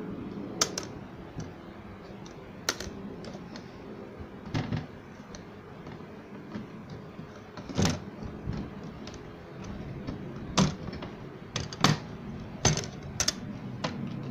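Irregular clicks and knocks of photo frames and their backing boards being handled and fitted together on a wooden table, a few sharp taps several seconds apart.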